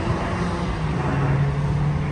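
Road traffic on the adjacent street: a steady noise of tyres and car engines with a low hum.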